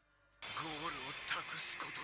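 Faint dialogue from the anime episode playing in the background: a voice delivering a line in Japanese over a light hiss. It starts about half a second in.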